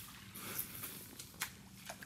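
A stone skipping across calm water: faint outdoor quiet with two soft ticks in the second half as the stone touches the surface.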